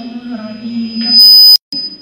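Public-address microphone feedback: a thin high-pitched whistle under a voice swells about a second in to a very loud squeal, then cuts off suddenly.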